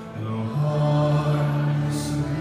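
A man's voice chanting a liturgical melody in long held notes, moving to a lower sustained note about half a second in.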